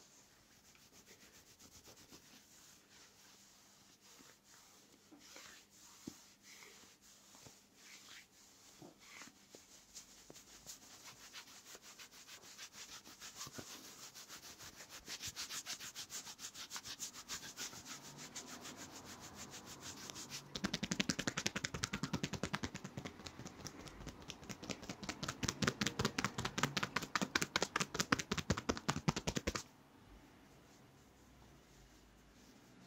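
Hands rubbing briskly over the back of a cotton T-shirt in a back massage, a rhythmic swishing of palm on fabric. The strokes get faster and louder, jump in level about two-thirds of the way through, then stop suddenly just before the end.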